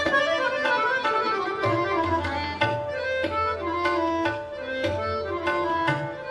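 Harmonium playing a melody in raga Kafi, its reedy notes changing from one to the next, accompanied by tabla strokes.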